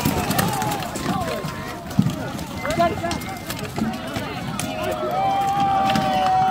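Many voices shouting and calling over each other during SCA armored combat, with scattered sharp knocks of rattan weapons striking armor and shields. One voice holds a long call beginning about five seconds in.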